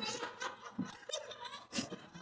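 Women laughing uncontrollably in short, fairly quiet fits and snickers. It is the giggling of people who have eaten a 'space cake', a cannabis-laced cake.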